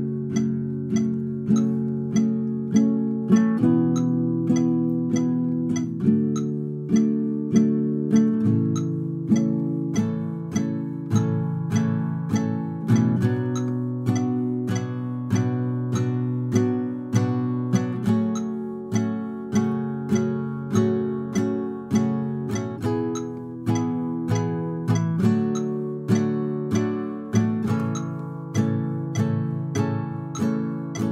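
Acoustic guitar, capoed at the second fret, strumming a steady basic rhythm through A minor, E minor, D, C and G chord shapes, changing chord on the 'and' of beat four. A metronome clicks along at 100 beats per minute.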